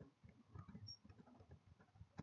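Faint, quick taps of computer keyboard keys, a scatter of short clicks as numbers are typed into spreadsheet cells.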